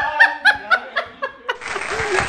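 A person laughing in short, quick bursts, about four a second, trailing off. About one and a half seconds in, applause starts suddenly.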